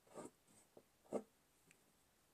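Faint scratching of a gold Stabilo Woodies crayon-pencil drawing accent marks on a paper collage, two short strokes about a second apart.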